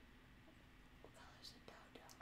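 Near silence: room tone, with faint whispered speech in the second half.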